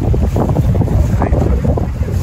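Strong wind buffeting the microphone: a loud, uneven low rumble.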